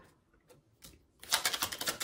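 A deck of cards being shuffled: a couple of faint clicks, then a quick run of papery card clicks from about a second in.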